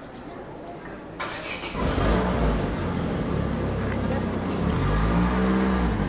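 A car engine starting a little over a second in, then running steadily, its pitch shifting upward near the end as the car pulls away.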